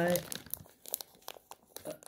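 Plastic bag of frozen blueberries crinkling under fingers as it is handled: a string of faint, irregular crackles and rustles.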